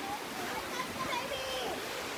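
Steady rush of flowing river water, with faint distant voices over it.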